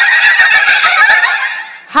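A loud, shrill, raspy vocal cry through the stage PA microphones, wavering in pitch, that dies away shortly before the two-second mark.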